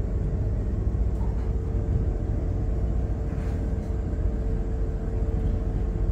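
Twin diesel engines of a Fleming 85 motor yacht running steadily underway, heard as a deep, even rumble inside the pilothouse, with a faint steady hum above it.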